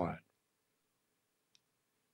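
The end of a man's spoken word, then near silence broken by a couple of faint clicks.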